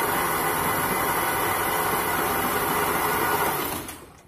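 Honda Beat scooter's electric starter cranking its single-cylinder engine with the spark plug removed, a steady whirr that stops shortly before the end. The engine is being spun over to check the plug's spark.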